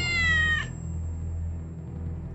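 A single cat meow, rising then falling in pitch and lasting just under a second, over a low steady music drone.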